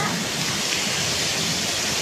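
Steady rush of pool water spilling over the edge into the slotted overflow gutter.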